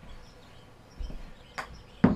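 Quiet room with a soft low thump about a second in and a sharp click about half a second later, from a golf club and ball being handled at a simulator hitting mat.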